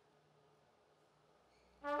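Near silence, then near the end a loud, long horn blast begins: one held note that steps up in pitch just after it starts, played as the sound of the trumpet of God.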